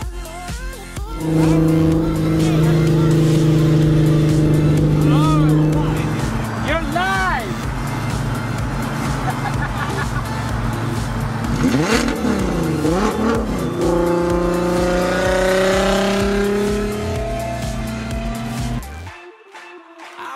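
Six-cylinder VR6 engine of a Mk1 VW Citi Golf under way on a highway. It runs at a steady pitch at first, dips briefly and recovers about two-thirds of the way in, then rises steadily in pitch as the car accelerates, and cuts off abruptly near the end.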